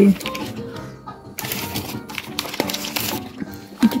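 Background music with a steady, moderate-level mix of faint held tones, and a few short clicks and clatters of shop noise, one about a second and a half in and one near the end.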